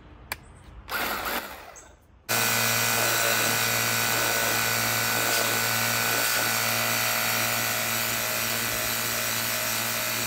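A Ryobi EZClean cordless pressure washer, drawing water from a bucket, starts abruptly about two seconds in after a click and a brief rustle. Its motor and pump then hum steadily under the hiss of its low-pressure (about 200–300 psi) jet spraying louvered sheet-metal panels.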